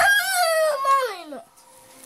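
A young child's long, high-pitched whining cry of "no", falling steadily in pitch and ending about a second and a half in: a protest at having his bread taken.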